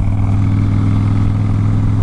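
Harley-Davidson Softail Springer Crossbones V-twin engine running at a steady cruise: a deep, even rumble with no change in speed.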